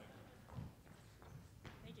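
Near silence with a few faint knocks and bumps of a handheld microphone being handled as it is passed over. A woman's voice starts at the very end.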